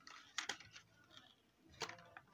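Faint clicks and light rustling of plastic toy packaging being handled while its fastener is worked loose: a couple of clicks about half a second in and another near the end.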